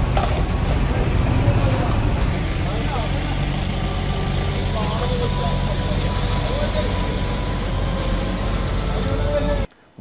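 Diesel engine of a compact excavator running steadily, with men's voices faintly over it. The sound cuts off suddenly just before the end.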